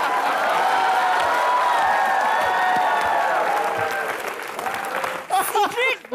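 Studio audience applauding after a punchline. The applause fades after about four seconds, and speech takes over near the end.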